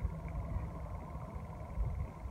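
Wind buffeting a phone's microphone: a steady low rumble.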